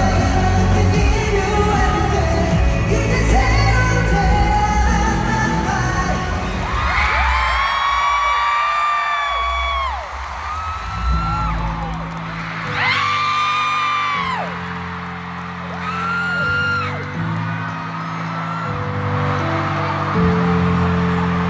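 K-pop music from an arena sound system, loud with heavy bass at first. About seven seconds in the beat drops away to a held synth chord, and high-pitched screaming from the crowd of fans rises over it in a few long bursts.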